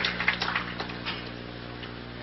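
Scattered handclaps from a bowling-alley crowd, thinning out and dying away over the first second, then the crowd's low background murmur over a steady low hum.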